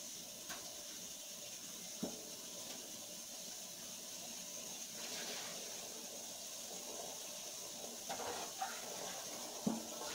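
Kitchen tap running steadily into a sink, with a light knock about two seconds in and another near the end.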